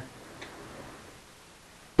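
Quiet room tone with a faint tick about half a second in.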